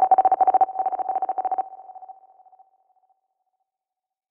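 Tail of a DJ intro's electronic sound effect: a steady, beep-like tone under thin, rapid stuttering pulses that fade out about two seconds in, the tone trailing away just after, then silence.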